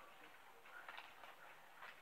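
Near silence, with a couple of faint soft ticks from a trading card being handled at a card binder.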